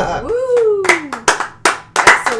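A few people clapping their hands in loose, uneven applause, the separate claps starting about a second in.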